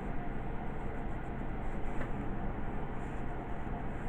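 Graphite pencil drawing straight lines on sketchbook paper, with faint scratchy strokes over a steady background hum.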